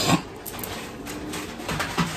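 Rustling and light handling noises of items being rummaged through in a shopping bag, with a brief louder rustle at the start.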